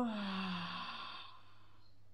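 A woman's drawn-out spoken "exhale" trailing off into an audible sigh as she breathes out along with a guided breathwork exercise. The voice falls in pitch and turns to breath, fading out a little over a second in.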